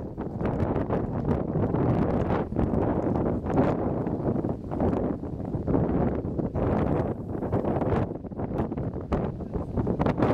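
Wind blowing across the microphone: a low, rushing noise that rises and falls with the gusts.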